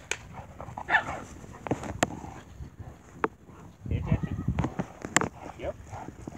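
A dog playing fetch makes a few short barking sounds. About four sharp clicks are scattered among them, and there is a low rumble a little after four seconds.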